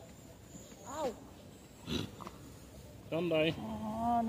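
A woman's short pained vocal sound about a second in, then a wavering groan near the end, her reaction to being stung by nettles.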